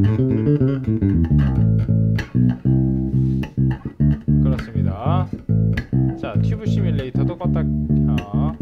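Electric bass guitar plucked with the fingers through an EBS MicroBass II bass preamp, playing a rhythmic line of repeated notes. The preamp's edge and middle EQ knobs are being turned as it plays, shifting the tone.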